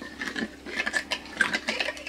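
A metal spoon stirring water in a ceramic bowl, with irregular clinks and scrapes against the bowl's sides, dissolving calcium chloride into the water.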